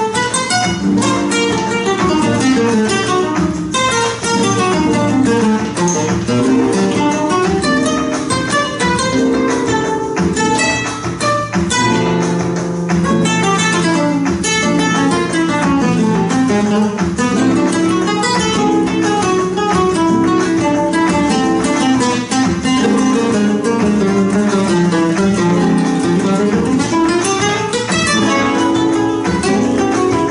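Two flamenco guitars playing together, with fast single-note runs rising and falling over strummed chords and no break.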